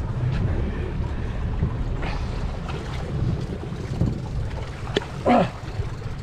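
Steady low rumble of the trolling boat's engine mixed with wind on the microphone, and water against the hull.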